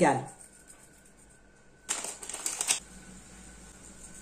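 Black nigella seeds sprinkled by hand over egg-washed bread dough on parchment paper. About two seconds in there is a brief spell of fine, rapid ticks as the seeds land, lasting under a second.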